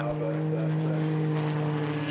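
Lamborghini Huracán GT3 racing engine running at steady revs, a held engine note that doesn't rise or fall.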